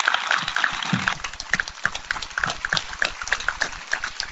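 Audience applauding: a dense, irregular patter of many hands clapping at once, right after a speech ends.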